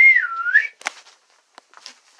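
A person whistling one short wavering note that rises, dips and rises again over under a second, followed by a sharp click.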